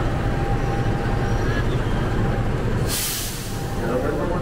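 A CC206 diesel-electric locomotive idling with a steady low rumble, heard close up. About three seconds in comes a short hiss of released compressed air.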